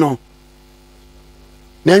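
Steady low electrical hum in a pause between a man's speech. His talk trails off just after the start and resumes near the end.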